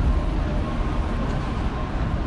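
Steady, rumbling city street noise picked up on a phone's microphone while it is carried along a sidewalk.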